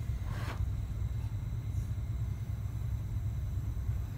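Steady low background hum, with a faint brief handling noise about half a second in as the wire and model are handled.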